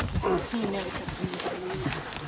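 Voices of several people talking, with pitch rising and falling and speakers overlapping.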